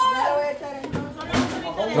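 People talking, with voices in the first half and another brief voice about one and a half seconds in.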